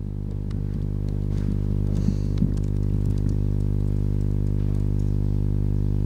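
Light keystrokes on a computer keyboard as a short terminal command is typed and entered, over a loud steady low electrical hum.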